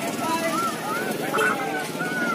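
Several voices calling out across a football pitch, heard at a distance and overlapping one another.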